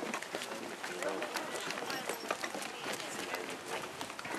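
Footsteps of several people walking, with people's voices talking.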